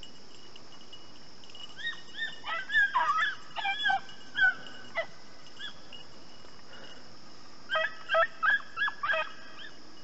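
Rabbit-chasing hounds barking and yelping on the rabbit's trail in two bouts, one from about two seconds in to five and another near eight seconds. The barking is a sign that the dogs are on the scent and running the rabbit.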